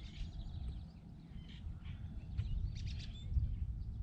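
Wind rumbling on the microphone, with a few faint, short bird calls.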